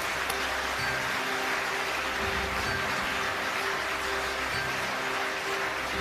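Audience applauding over stage walk-on music with sustained tones and a low pulse.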